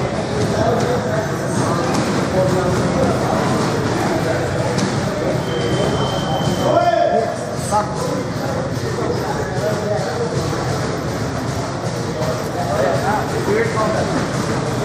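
Indistinct chatter of several people in a gym: a steady hubbub of voices with no clear words.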